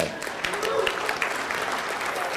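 Audience applauding, a dense patter of many hands clapping, with a voice calling out briefly about half a second in.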